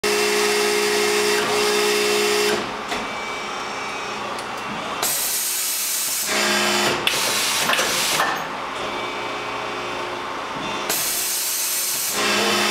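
Arburg 370C hydraulic injection moulding machine running: a steady hum with a few fixed tones, and loud rushing hiss phases lasting a second or two that come and go every few seconds as it works.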